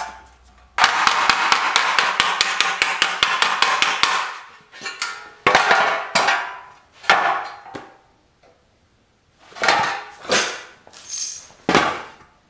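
Auto-body hammer striking sheet steel laid over a wooden stump, hammer-forming the steel. A fast, steady run of blows lasts about three seconds, and the metal rings through it. Then come a few slower, separate blows, each ringing out, with a short pause between the groups.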